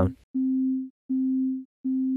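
Low sine-wave notes repeating about every three quarters of a second, each with a faint click at its start, played through Ableton's Compressor at an infinite ratio with the threshold being pulled down. Each note's decaying envelope is squashed to a flat, level plateau before it fades out quickly.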